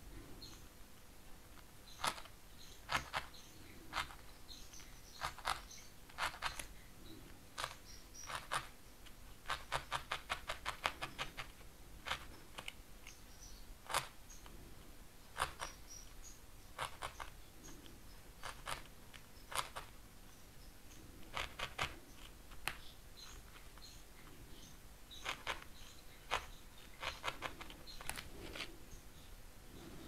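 Felting needle stabbing wool into a foam pad: sharp clicking jabs in short bursts with pauses between them, the longest run about ten seconds in at roughly six jabs a second.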